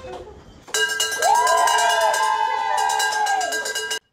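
A handbell rung rapidly and continuously, starting under a second in and cutting off sharply at the end, with voices cheering and whooping over it. The ringing marks the end of chemotherapy treatment.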